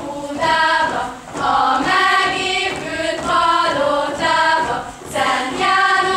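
A group of girls, about 11 to 14 years old, singing a Hungarian folk song together in phrases, with short breaks between phrases about a second in and again about five seconds in.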